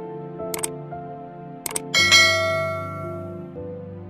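Subscribe-button animation sound effects over soft background music: short mouse-click sounds about half a second in and again just before two seconds, then a bright notification-bell ding at about two seconds that rings out and fades over more than a second.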